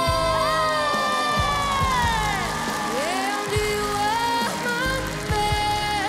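A teenage girl singing long, held notes that bend and slide, with a long falling glide midway, over a backing track, while the audience cheers and claps.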